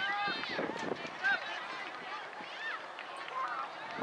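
High-pitched voices of young players and spectators shouting and calling out across a soccer field. Several voices overlap, in short cries that keep rising and falling.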